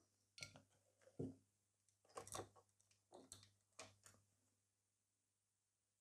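Near silence broken by about five faint, brief taps and clicks over roughly four seconds, from fingers with long gel nails handling a small metal pendant and nail-art tools.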